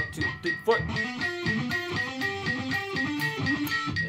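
Electric guitar playing a run of single notes from a tabbed practice exercise, in time with a metronome clicking about four times a second.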